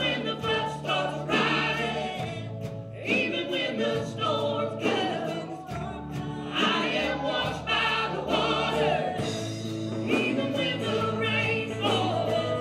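Live worship song: a woman singing lead into a microphone over a band with electric guitar, with held bass notes that change every couple of seconds and a steady beat.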